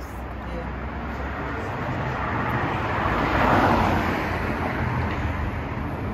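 Road traffic on a city street: a vehicle driving past, its tyre and engine noise swelling to a peak a little past halfway and then fading, over a steady low traffic rumble.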